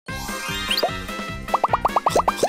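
Upbeat cartoon-style intro jingle with a bouncy beat. Near the end a quick run of short rising 'plop' sound effects, several a second, plays over the music.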